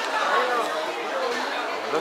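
Indistinct chatter of several people talking in a large covered market hall.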